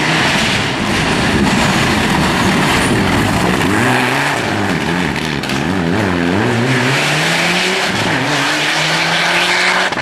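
Rally car engine running hard through a corner: the revs dip and rise several times, then climb steadily as it accelerates away near the end.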